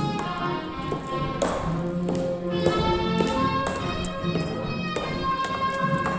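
Tap shoes striking a hard floor in scattered, sharp taps over recorded music.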